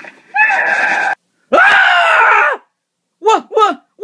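A person screaming: two long, loud held screams, the second falling in pitch at its end, then two short yelps near the end.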